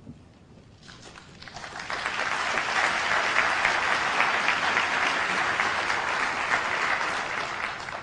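Audience applauding, building up over the first two seconds, holding steady, then tapering off near the end.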